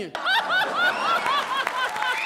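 A woman laughing heartily: a rapid run of high-pitched "ha" pulses, about five a second.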